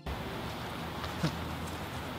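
Outdoor background noise: a steady hiss with a low hum under it, and a faint short pitched sound about a second in.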